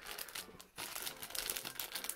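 Crinkling of a small clear plastic bag with a LEGO brick inside as it is handled and turned, with a brief pause just before the first second.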